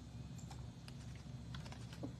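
Faint, irregular clicks of a computer keyboard being typed on, over a steady low hum.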